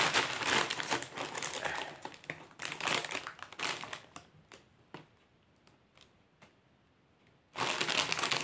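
Food packaging crinkling and rustling as it is handled, dense for the first few seconds, then thinning to a few sharp crackles and a near pause, with a loud burst of crinkling again near the end.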